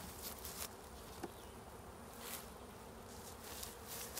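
Honeybees buzzing faintly around an open hive.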